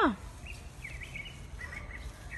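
A voice's call falls in pitch and cuts off just after the start, then a few faint, short bird chirps sound over a low outdoor rumble.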